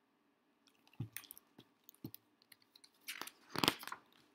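Hands handling a picture book and turning a paper page: a few light knocks and clicks, then louder rustling and crinkling of the page near the end.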